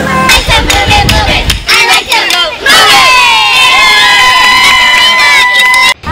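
A small group of people cheering and whooping over scattered clapping, then several voices holding one long shout of about three seconds until it cuts off.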